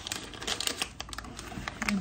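A paper packet of pancake mix being handled and opened, with a run of irregular crinkles and clicks.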